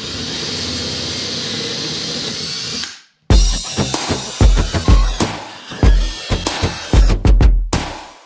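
Cordless drill running a hole saw, cutting a one-inch hole in plastic with a steady whir that cuts off after about three seconds. Background music with a heavy bass beat follows.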